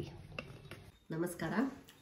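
A few light clicks of a utensil against a plate of rice in the first second, then a short stretch of a voice.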